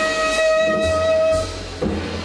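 Live jazz trio of saxophone, double bass and drum kit: the saxophone holds one long note that ends about three-quarters of the way through, over bass notes and cymbal strokes.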